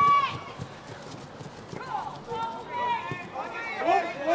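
Shouted calls from several voices across a rugby pitch, loudest right at the start and again near the end, with a string of faint light thuds in the gap between the shouts.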